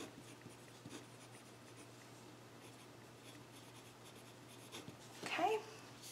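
Pen writing on paper: faint, scattered scratching strokes as words are written out by hand. A short vocal sound comes near the end.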